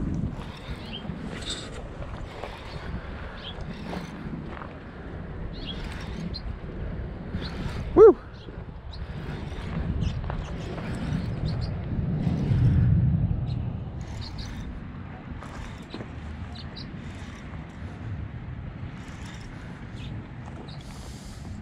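Low rumble of wind and handling noise on the microphone while a hooked largemouth bass is played on a baitcasting rod and reel. A short shouted "whoo" about eight seconds in is the loudest sound.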